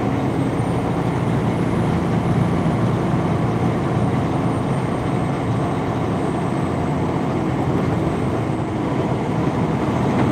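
Steady engine and road noise heard inside a semi truck's cab at highway speed, with a faint thin high whine above it.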